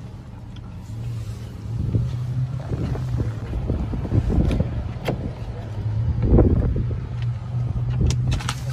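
Handling and rustling noise on a hand-held phone microphone as it is carried out of a car and in through the rear door, over a steady low hum. There are a couple of sharp clicks in the middle and a louder bump about six seconds in.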